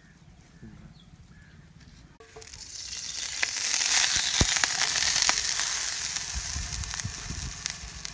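Goat brain burger patty going into hot oil in a frying pan: the oil starts sizzling suddenly about two seconds in, with scattered pops, loudest a couple of seconds later and then easing a little.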